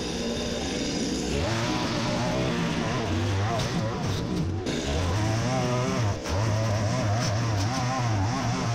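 Petrol string trimmer (whipper snipper) running as it cuts long grass, its engine speed rising and falling over and over as the throttle is worked and the line bites into the grass.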